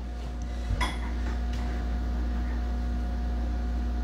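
Idle electric guitar rig humming steadily: a low mains hum with a faint higher buzz, and a faint tap about a second in.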